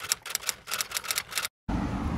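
Typewriter key-click sound effect, a rapid run of about eight clicks a second that stops suddenly about one and a half seconds in, followed by steady outdoor background noise.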